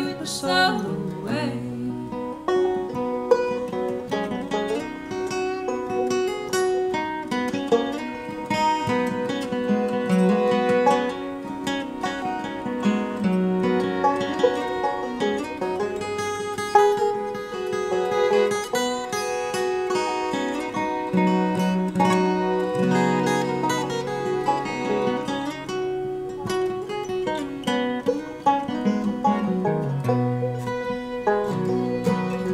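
Live bluegrass string band of fiddle, acoustic guitar and five-string banjo playing an instrumental break, with no singing.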